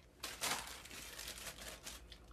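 A thin plastic bag crinkling faintly as it is handled, a fine crackling with many small clicks.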